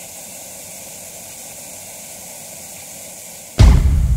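TV-static white-noise hiss from a channel intro sound effect, steady, then a sudden loud low hit near the end.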